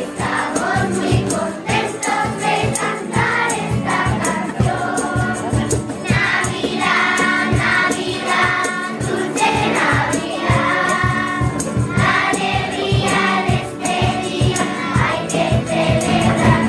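Children's school choir singing together, with a steady percussive beat running under the voices.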